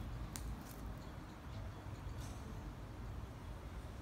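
Quiet outdoor background: a steady low rumble with one faint sharp click about a third of a second in.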